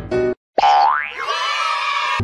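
Background music stops briefly, then an added comic sound effect starts suddenly: a rising whistle-like glide in pitch that runs into a held bright tone.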